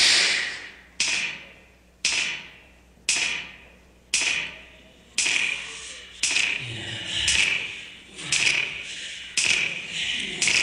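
Dance music cuts off, then single sharp percussive hits sound about once a second, nine in all, each ringing out and dying away in the hall's reverberation.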